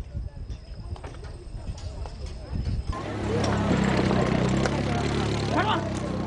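Outdoor scrapyard ambience: a low rumble with a few scattered knocks. About three seconds in it changes abruptly to people's voices over a steady low hum.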